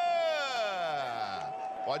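A football commentator's drawn-out goal shout: one long call that holds, then falls in pitch as it trails off over about a second and a half.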